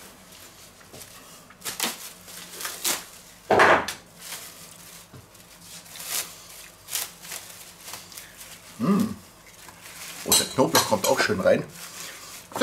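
Scattered clinks and knocks of kitchen things handled on a wooden cutting board. Near the end comes a dense crinkling of plastic cling film as it is pulled and stretched over a bowl.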